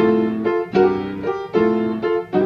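Piano playing a blues lick: three chords struck about three-quarters of a second apart, each ringing on as it fades.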